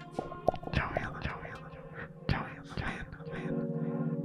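A man's quiet, breathy laughter and whispered murmuring, with a few clicks. A music bed comes in under it near the end.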